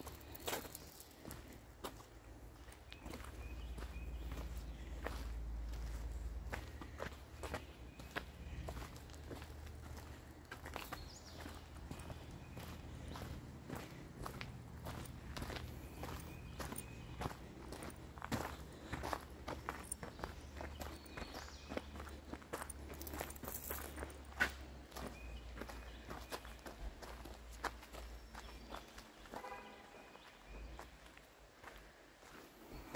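Footsteps of people walking on a dirt and gravel trail, crunching at a walking pace, over a low rumble of wind or handling on the microphone.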